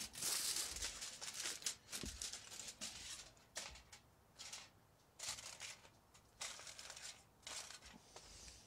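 A sheet of foil crinkling in irregular bursts as it is crumpled and pressed down over a chunk of dry ice on top of dried beans in a plastic bucket.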